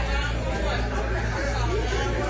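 Raised voices in a heated argument, someone calling for 911 to be called, over a steady low rumble.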